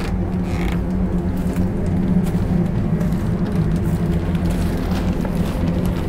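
A steady low drone with a few held tones, running evenly with no sharp sounds.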